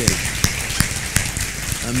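Congregation applauding: many hands clapping in a dense patter, with a few sharper single claps standing out.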